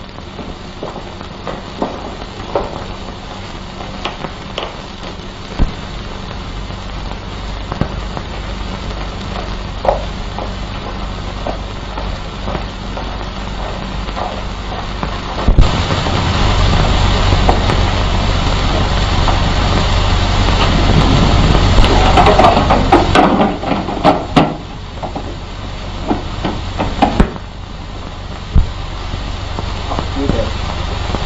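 A propeller aircraft's piston engine comes in suddenly about halfway through and runs loudly with a deep rumble for about eight seconds, then drops away. Before it there is only a faint hiss with scattered clicks.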